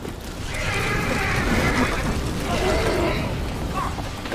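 Horses whinnying in alarm at a barn fire: two long neighs, one after the other.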